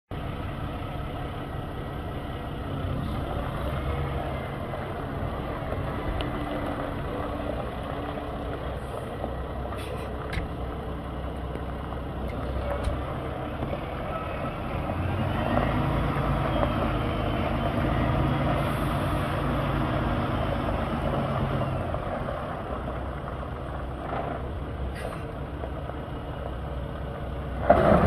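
Paccar MX-13 inline-six diesel of a 2014 Peterbilt 579 idling steadily, a little louder for several seconds in the middle. A few short clicks come over it.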